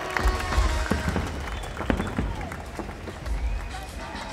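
Aerial fireworks going off: a rapid scatter of sharp cracks and bangs over deep low booms, mixed with crowd voices and the show's music.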